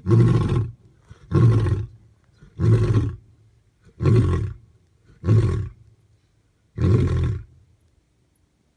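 A male African lion roaring: a run of six deep, loud calls, evenly spaced a little over a second apart, the last dying away near the end.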